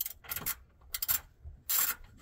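Four short rasping scrapes from work up under the car's front bumper, where the splash-pan fasteners are reached from below; the last scrape is the loudest.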